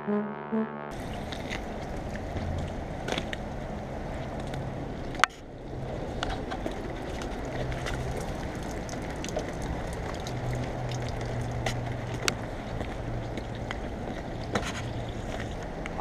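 Brass-heavy music cuts off about a second in, giving way to outdoor noise from a handheld camera carried across wet pavement: a steady rush with a faint low hum and scattered light clicks, and one sharp knock about five seconds in.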